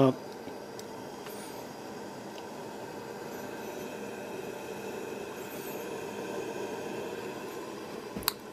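Military infrared Coleman 200A pressurized white-gas lantern burning, its burner giving a steady, even hiss.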